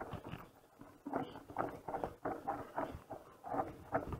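Irregular run of short brushing and rustling noises, two or three a second, from an electric mountain bike ridden along a dirt singletrack through tall grass that sweeps against the handlebars and camera.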